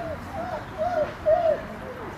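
A pigeon cooing: a run of four or five short coos, each rising and falling in pitch, the loudest a little past the middle.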